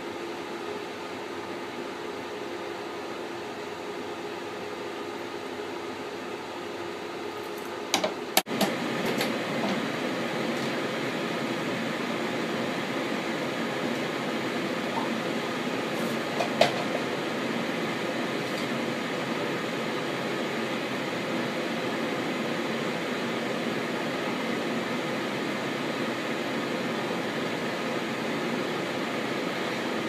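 Steady mechanical hum of cinema projection-booth machinery and air handling. It is quieter at first, then louder and fuller from about eight seconds in. Sharp metallic clicks from handling the film reel and make-up table come at about eight seconds and again near the middle.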